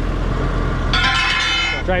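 Massey Ferguson tractor engine running steadily while out stone picking. About a second in, a loud, high, steady tone with overtones sounds for just under a second and then stops.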